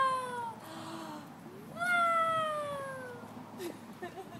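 A high voice making two long, drawn-out cries, each sliding slowly down in pitch. The first trails off about half a second in; the second starts a little before the two-second mark.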